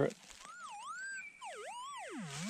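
QED pulse-induction metal detector's speaker giving its target signal over a small pin: a warbling tone that starts about half a second in and swoops down and back up in pitch twice.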